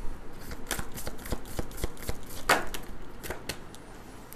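Tarot cards being handled: cards slid and flicked off the deck and laid down, a run of light papery clicks and rustles with one sharper snap about two and a half seconds in.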